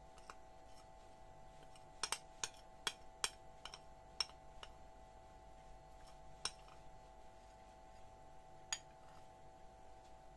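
Metal spoon scraping and clinking against the inside of a ceramic bowl as honey is scraped out, a scattering of sharp clinks, most of them between two and five seconds in and one more near the end. A faint steady hum runs underneath.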